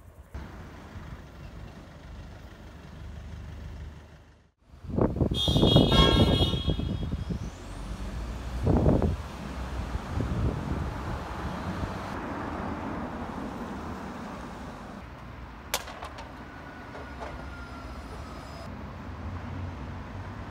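Street traffic with a car horn honking for about a second and a half, about five seconds in. Vehicles keep passing, with a louder pass soon after and a single sharp click later on.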